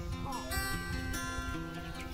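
Background acoustic guitar music: plucked and strummed notes that start right at the beginning and continue steadily.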